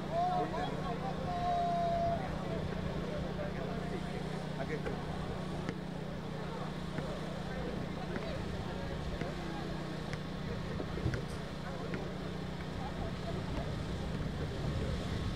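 Open-air court ambience: a steady low hum with faint voices calling out and a few light knocks.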